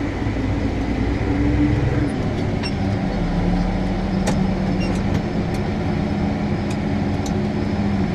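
Case IH Maxxum 125 tractor's diesel engine running steadily under load, heard from inside the cab, while pulling a Unia Kos 3.0 ST stubble cultivator through the field. The engine's note shifts about two seconds in and then holds steady, with a few faint ticks from the cab.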